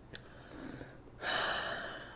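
A person's short, sharp breath, a gasp or puff of air lasting about half a second, starting a little over a second in. It follows a faint click.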